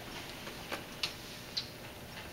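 Quiet room tone with three small, sharp clicks at uneven spacing in the middle of the stretch, like pens, papers or objects being handled at a desk.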